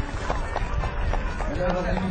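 Indistinct voices of people talking in short snatches, over a steady low background rumble.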